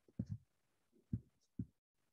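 Three faint, low, soft thumps spread over two seconds, the first one doubled.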